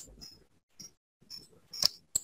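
Three short computer mouse clicks, faint at first, the last and loudest near the end.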